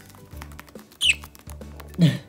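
A budgerigar gives one short, sharp chirp that sweeps downward in pitch about a second in, over background music with a steady low bass line.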